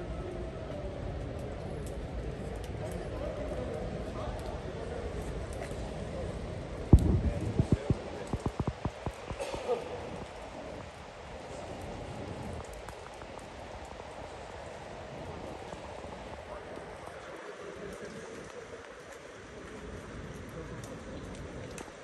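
Indistinct voices and the open hum of a large, empty stadium. About seven seconds in comes a quick run of sharp knocks, the loudest sound, which thins out over the next three seconds.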